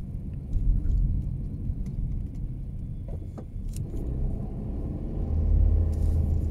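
Low, steady rumble of a car's engine and tyres heard from inside the cabin while driving, with a few faint clicks or rattles. The rumble grows louder near the end.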